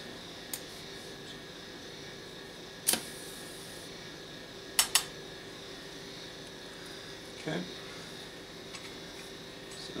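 A few sharp clicks over a steady electrical hum as 24 volts is put through a two-coil nichrome-wire e-primer coated in dried smokeless-powder slurry. One loud click about three seconds in is trailed by a brief faint hiss, and two quick clicks follow near the five-second mark.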